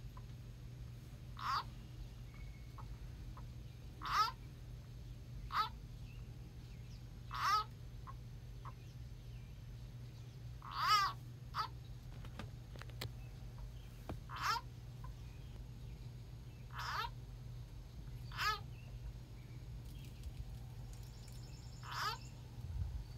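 An animal calling over and over: about ten short, pitched calls, one every one to three seconds, over a steady low hum.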